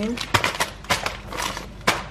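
Thin plastic grocery bags crinkling and rustling as they are handled, in a string of short, sharp crackles.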